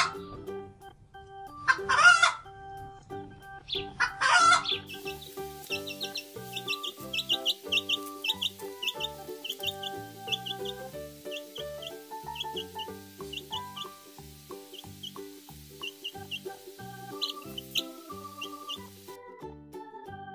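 Recorded hen clucks, three loud calls about two seconds apart, followed by a chick peeping rapidly in short high cheeps over light background music.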